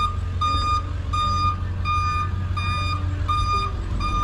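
Electronic alarm beeping at one steady high pitch, about one and a half beeps a second, over a steady low hum.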